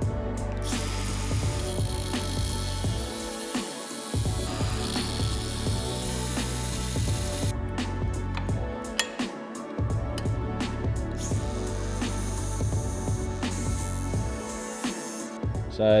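A cordless power tool cutting a steel panhard bracket held in a vise, radiusing its edge for clearance. It runs in two stretches, from about a second in to about halfway, and again near the end, over background music.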